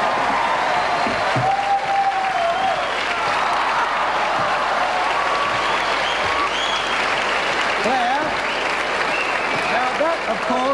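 Studio audience applauding steadily, with voices and some shouts heard over the clapping.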